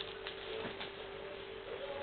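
Steady hiss with a low, constant hum and a few faint ticks from a TV set's speaker during a pause in speech, the noise of a weak, distant analog TV broadcast.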